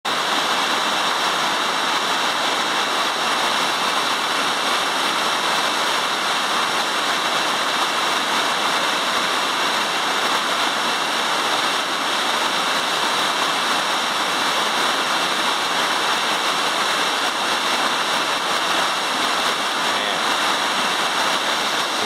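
Waterfall cascading over a broad rock face: a steady rush of falling, splashing water.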